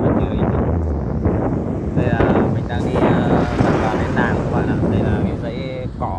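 Wind buffeting the microphone while riding an electric bicycle along a road: a steady, loud rumble. Indistinct voices join it from about two seconds in.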